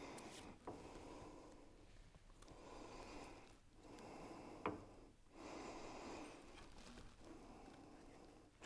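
Faint handling sounds of a Starrett steel straight edge being turned and rocked on thin paper shims laid on a planed timber edge: soft rubbing and sliding with a couple of small clicks, the sharpest a little past the middle. The straight edge spinning on a four-thou shim shows the edge is slightly hollow.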